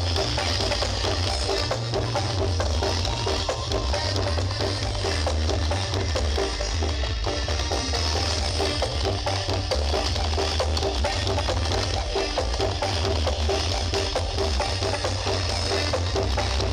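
Music with a percussion beat played very loud through a large outdoor sound-horeg sound-system rig, dominated by a heavy, continuous bass.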